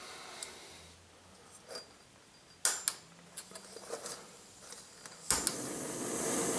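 Cheap canister camp stove (a knockoff of the Pocket Rocket) being fitted and lit: a few sharp clicks and light knocks as it is handled. About five seconds in, a sharp click as the burner lights, then the burning gas hisses steadily.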